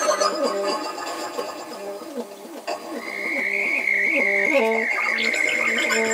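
Free-improvised ensemble music: a quick, repeating low figure cycles over and over. About halfway through, a high held tone comes in and wavers slightly.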